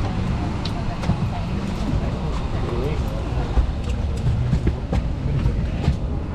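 Steady low rumble of a parked airliner's cabin, with a murmur of passengers talking in the background and a few light clicks.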